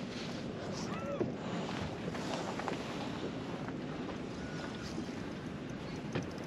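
Steady wind noise on the microphone over water washing against a small boat's hull, with a faint short chirp about a second in.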